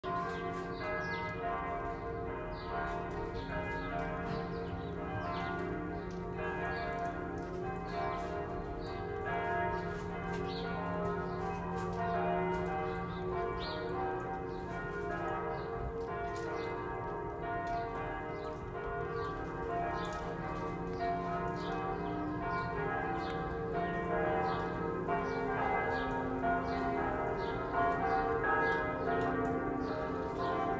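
Church bells ringing, many bells struck one after another in a steady, even rhythm, their tones hanging over each other.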